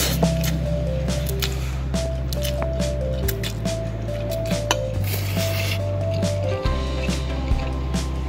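Background music with a steady low bass and a simple stepping melody, over someone eating instant fried noodles: slurping and a few clinks of a metal fork on a ceramic plate.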